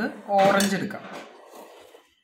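Ceramic bowls and a steel pan being shifted on a stone countertop: a knock, then clinking and ringing of metal spoons against the dishes, dying away over the second half.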